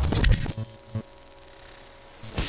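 Electronic glitch transition sound effect. A quick cluster of sharp, clinking clicks and high, thin tones comes in the first half second, and one more click follows about a second in.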